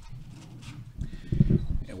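Muffled, irregular low thumps and shuffling: movement and handling noise picked up near the podium microphone while people shift about the stage. It is loudest in the second half, and a man starts to speak right at the end.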